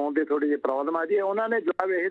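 Only speech: a man talking continuously over a telephone line, the sound narrow and thin.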